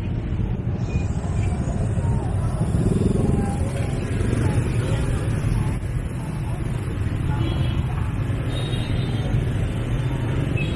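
Jammed motor-scooter traffic crawling along: many small scooter engines running together in a steady low rumble, with a brief louder engine or horn note about three seconds in.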